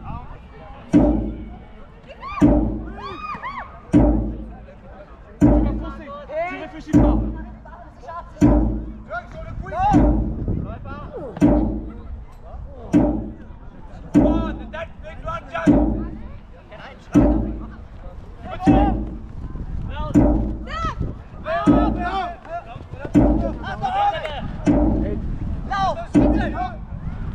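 Jugger stone-count drum struck at an even pace of about one beat every one and a half seconds, each beat marking one "stone" of game time. Players' and referees' voices call out between the beats.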